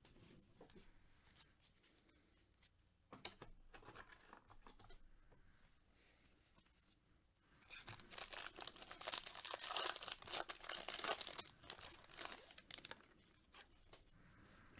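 A baseball card pack's wrapper being torn open and crinkled by gloved hands. There are faint rustles in the first half, and the tearing and crinkling is densest from about eight to thirteen seconds in.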